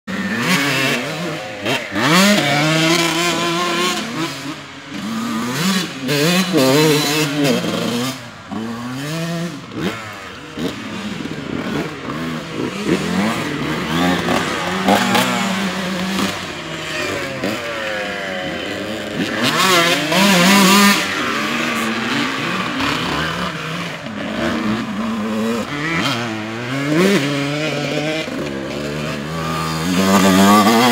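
Dirt bike engines revving up and down over and over, the pitch climbing as the throttle opens and falling as it shuts, with stretches of steadier running in between.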